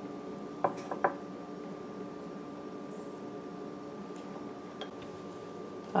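Two light clinks about half a second apart, about a second in, as a small ceramic bowl knocks on a glass measuring cup while yeast is tipped into warm water, over a steady background hum.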